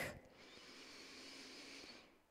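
A slow, faint in-breath: a soft airy hiss lasting about a second and a half that stops near the end.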